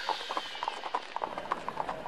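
Quick, even clip-clop steps, about six or seven a second: a cartoon walking sound effect like hooves on hard ground.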